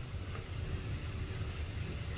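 Steady low background rumble, with a faint rustle of the cardboard box being handled about a third of a second in.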